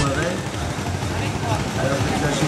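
Indistinct voices talking over a steady background noise.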